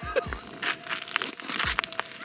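Crunching snow and rustling of a winter jacket as a person kneels down on snow-covered ice, with several sharp clicks among the crackle. A faint steady hum runs underneath.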